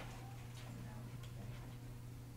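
Faint, irregular ticking over a steady low hum: room tone.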